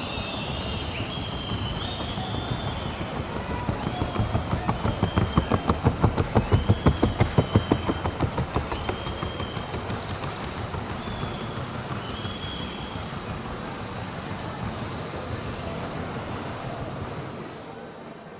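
A Colombian trocha mare's hooves beating out the fast, even rhythm of the trocha gait. The hoofbeats grow louder as she passes close, loudest in the middle, then fade as she moves away.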